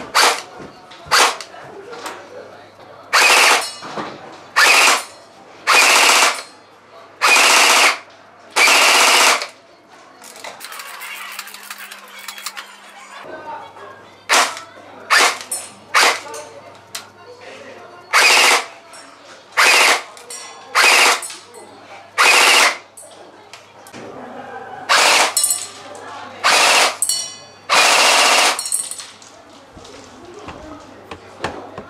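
Tokyo Marui M16 Vietnam electric airsoft gun firing: a few single shots, then a long string of short bursts of fire, with a pause of about four seconds in the middle.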